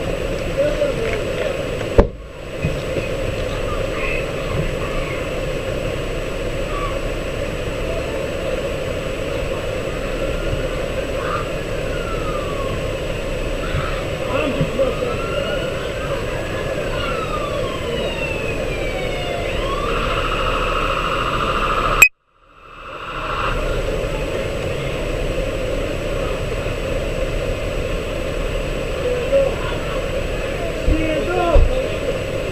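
Steady muffled rustle and rumble on a body-worn police camera microphone, with a faint siren wailing up and down in the middle. A sharp click about two seconds in, and another near the last third, where the audio cuts out for about a second.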